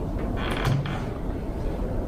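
Furniture creaking briefly about half a second in, over a low steady room rumble.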